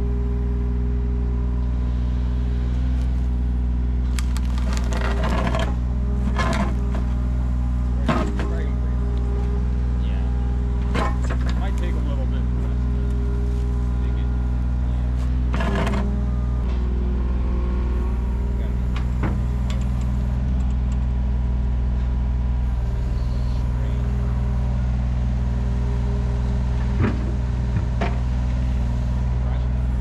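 Mini excavator's diesel engine running steadily under load as its bucket digs a trench, with several short scrapes and clanks from the bucket working the soil and gravel, the sharpest about eight seconds in and near the end.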